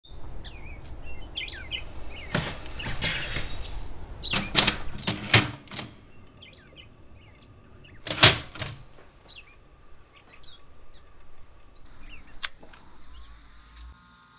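Manual typewriter: a second-long rattle about two seconds in, then a handful of separate sharp clacks of the keys and mechanism. Small birds chirp faintly throughout.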